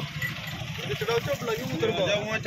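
Men's voices talking among a crowd over a steady low rumble.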